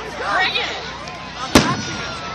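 A single sharp aerial firework bang about three-quarters of the way through, with a brief echo, over people talking nearby.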